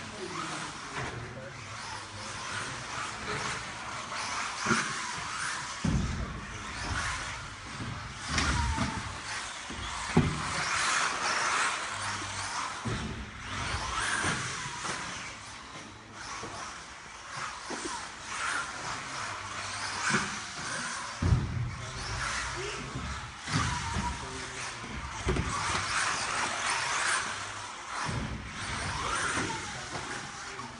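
Xray XB4 1/10-scale 4WD electric off-road buggy lapping a carpet track: the electric motor's whine swells and fades with the throttle over tyre noise, broken by several heavy thumps of the car landing.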